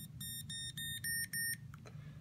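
SwissMicros DM42 calculator's beeper giving about five short high-pitched beeps in quick succession as its volume soft key is pressed, the last two louder.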